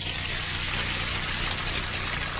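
A steady, loud rushing hiss, mostly high-pitched, that comes on suddenly, with a faint low hum beneath it.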